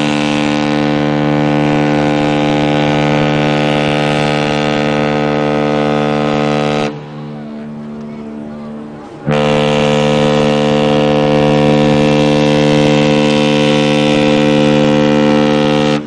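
Cruise ship's horn sounding two long, deep, steady blasts. The first stops about seven seconds in and the second starts after a pause of about two seconds.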